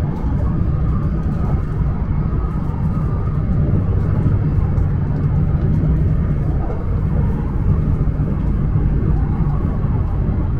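Steady running noise inside the cabin of a Joetsu Shinkansen train at speed: a continuous deep rumble with no sudden sounds.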